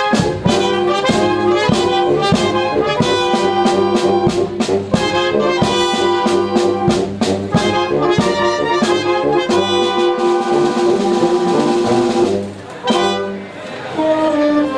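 Wind band playing a pasodoble live: clarinets, saxophones and brass over a steady beat of bass drum and cymbals, about two beats a second. Near the end a passage with ringing cymbals gives way to a brief drop in the music before the band comes back in.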